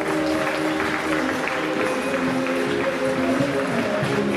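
Group singing in held notes, like a football chant, over steady clapping.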